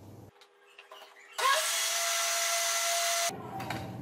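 National countertop blender's motor spinning up with a rising whine about a second and a half in, running steadily for about two seconds as it blends liquid cake batter, then switched off.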